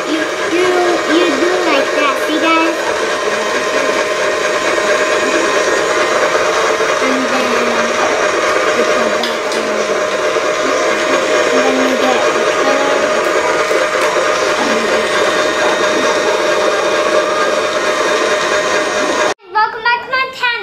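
Small electric motor of a toy egg-decorating spinner whirring steadily while markers are held against the turning egg, stopping abruptly near the end.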